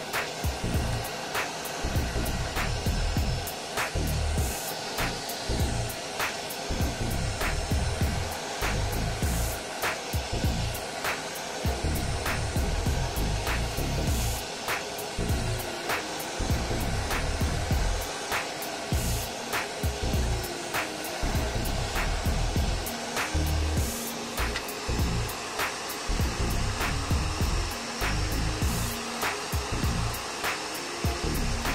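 Hot-air rework station blowing steadily at maximum airflow, heating a circuit board to melt solder. Background music with a steady beat plays over it.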